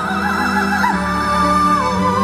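Soprano singing a wordless high melody with wide, quick vibrato, holding one long steady note about halfway through before the vibrato returns, over grand piano and sustained cello accompaniment.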